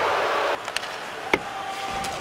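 Ice hockey arena crowd noise, an even roar that drops off abruptly about half a second in, leaving quieter rink ambience with a single sharp knock of stick or puck on ice about a second later.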